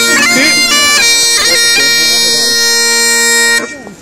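Great Highland bagpipe playing a tune over its steady drones, which cuts off abruptly about three and a half seconds in.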